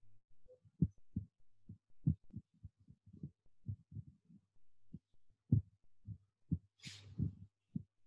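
Muffled keyboard typing heard over a call line: irregular low taps, several a second, over a faint steady hum, with a brief hiss near the end.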